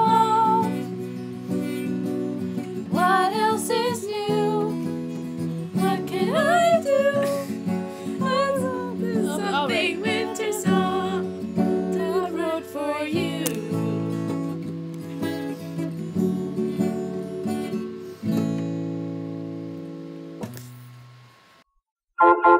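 Acoustic guitar strummed while voices sing along. The singing stops about two-thirds of the way through, and the final guitar chord rings out and fades away, then cuts off shortly before the end.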